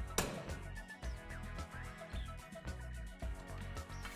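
Background music with a steady beat. Just after the start, a single sharp click as the basketball hoop's dunk latch is pushed up with a broomstick and releases, letting the backboard be lowered.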